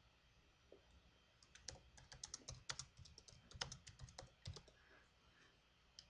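Typing a short phrase on a computer keyboard: a quick, irregular run of soft key clicks that starts about a second and a half in and stops about a second before the end.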